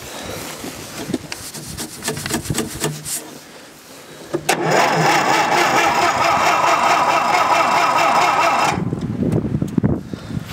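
An old snow-moving machine's engine being cranked over by its electric starter in the freezing cold with the choke stuck: quick clicking at first, then a loud, steady cranking whir from about four and a half seconds in that cuts off suddenly near nine seconds, without the engine catching.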